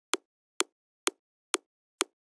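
Top layer of an electronic kick drum looping four-on-the-floor at 128 BPM, five short clicky hits about half a second apart. A parametric EQ's low cut has stripped its bass body, leaving only the snap of the attack.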